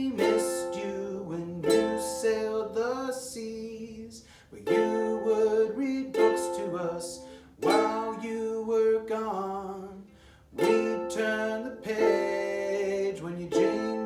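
A man singing a slow, gentle song with his own strummed ukulele accompaniment, in a small room. Each sung line starts on a strum and fades out, with short breaks about every three seconds.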